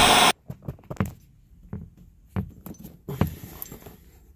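A brief loud burst of TV-static noise right at the start, cutting off suddenly. It is followed by scattered light clicks and small rattles of something being handled.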